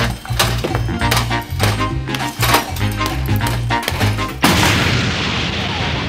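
Background music with a steady beat and bass line. About four and a half seconds in, a loud explosion sound effect cuts in and trails off as a hiss.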